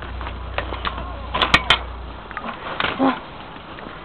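Scattered crunches and clicks of footsteps in snow and of the handheld phone being handled, over a low rumble on the microphone that drops away about two seconds in.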